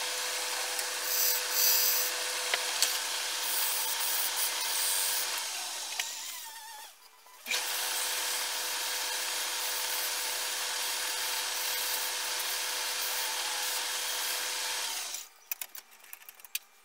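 Wood lathe spinning a wooden bowl, with a steady hiss and a faint hum from the machine. In the first half a turning tool scrapes the wood, and after a short break sandpaper is held against the spinning piece, rubbing steadily. The hiss stops about fifteen seconds in, and a few light clicks follow.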